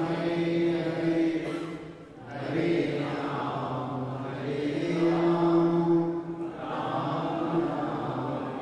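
A man's voice chanting into a microphone in a slow, melodic recitation, holding long level notes, with a brief breath pause about two seconds in.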